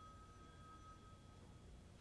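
Near silence: faint recording hiss with a thin, steady high tone that fades out a little past halfway.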